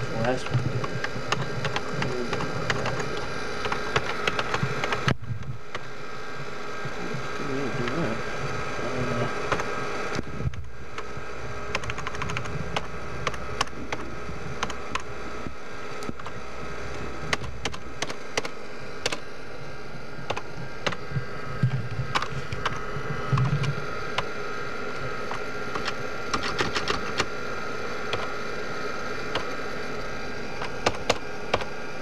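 Rapid typing on a computer keyboard: irregular key clicks over a steady hum, with the sound briefly dropping out about five seconds in and again about ten seconds in.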